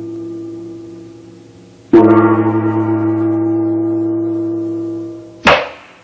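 A large metal gong struck once about two seconds in, ringing with a rich, wavering tone that slowly fades while an earlier strike dies away. A short, sharp percussive stroke comes near the end.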